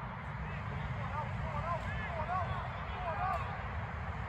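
Distant shouts and calls from people around a football pitch during play, faint over a steady low background rumble.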